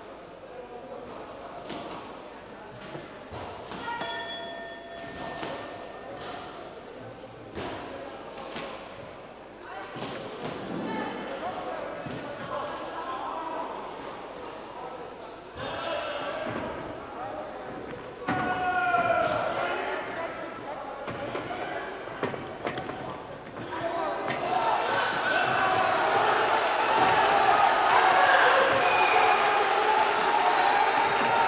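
A kickboxing bout in a large hall: a ring bell rings once about four seconds in, then gloved punches and kicks land with sharp thuds while voices shout from the corners and the crowd. The crowd noise swells and grows louder over the last several seconds.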